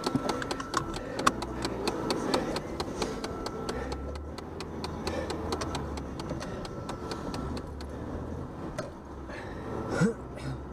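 Inside a moving car's cabin: a low engine and road rumble under rapid, irregular clicks and rattles, which thin out near the end.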